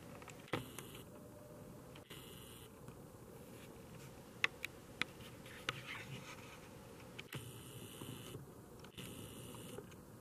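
Faint handling noise from a camera being moved and zoomed: scattered soft clicks and a few short, hissy whirs over quiet room tone.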